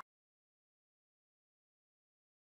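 Silence: nothing can be heard.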